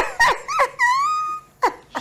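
A man's voice imitating a small dog such as a chihuahua: a few short high yelps, then one longer drawn-out whine.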